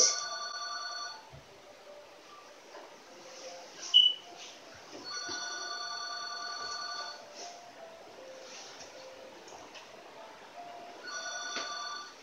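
An electronic ringing tone made of several held notes, sounding three times about every five to six seconds, once at the start, once about five seconds in and once near the end. There is a short sharp click about four seconds in.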